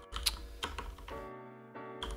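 A few keystrokes typed on a computer keyboard, mostly in the first second, over soft background music holding steady chords.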